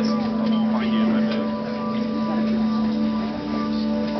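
A live band holds a steady, sustained drone chord on keyboards and electric guitar, with audience members talking close by.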